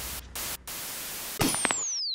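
Old-television static hiss that drops out briefly twice, then a few clicks and a high whistle falling steadily in pitch: a CRT television switch-off sound effect.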